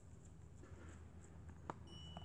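Near silence with a faint crunch and one sharp click of a deer chewing feed, then a thin, steady high tone begins just before the end.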